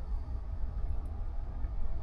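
A low, unsteady rumble with a faint hiss above it.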